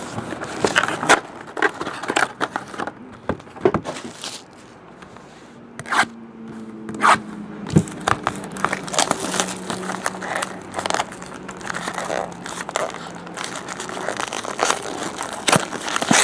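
Clear cellophane shrink wrap being torn off and crinkled by hand, with scraping and tapping as a cardboard trading-card box is opened. The sound is a run of irregular crackles and scrapes with a few sharper snaps in the middle.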